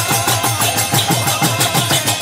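Kirtan music: mridanga drums played in a fast, even rhythm, their bass strokes sliding down in pitch, over a held harmonium chord with small hand cymbals ticking above.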